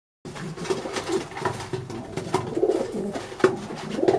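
Domestic racing pigeons cooing, a continuous low warbling murmur, with a few short sharp clicks in between.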